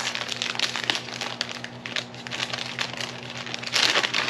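Paper packaging rustling and crinkling as a small paper gift bag is handled and opened, with a louder burst of crinkling near the end.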